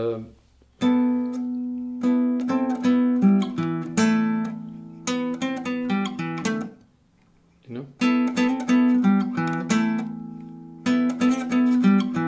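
Nylon-string classical guitar played fingerstyle: a short closing phrase of plucked notes over a ringing low note, played twice with a pause of about a second between the two passages.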